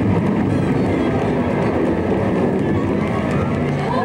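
Loud, dense rushing and rumbling noise of a staged tornado sound effect.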